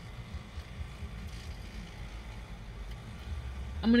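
Steady low rumble inside a parked car's cabin, with a faint even hiss above it.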